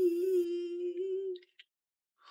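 A voice humming one long, steady note that stops about one and a half seconds in.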